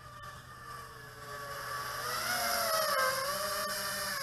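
Eachine Wizard X220 racing quadcopter's brushless motors and propellers whining in flight. The whine grows louder as the quad comes in close overhead, and its pitch wavers up and down with the throttle.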